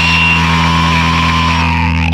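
Noisy, distorted punk rock music: held low notes under a sustained wavering tone and a wash of noise. The high noise cuts off suddenly near the end, leaving a low drone.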